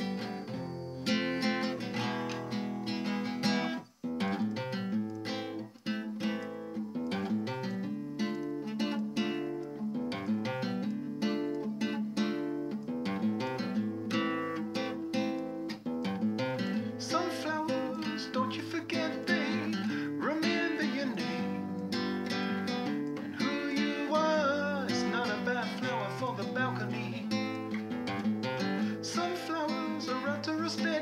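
A nylon-string classical guitar played solo with plucked and strummed chords, with two short breaks in the first few seconds. From a little past halfway a man's voice sings over the guitar.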